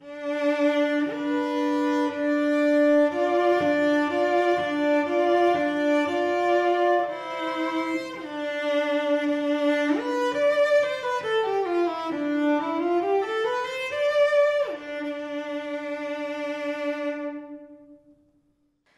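Solo cello, bowed. It holds a long D with F natural sounding above it as a minor-third double stop in just intonation. From about ten seconds in it plays a stepwise scale down and back up, taking the same minor third melodically in Pythagorean intonation, and ends on a long held D.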